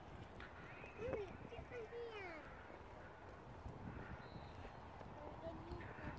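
Quiet outdoor ambience with faint, distant voices, several short murmured calls a second or two in, and a few brief high falling chirps.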